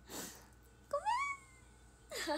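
A young woman's breathy laugh, then about a second in a short high squeal through her hands that rises and then slowly falls in pitch.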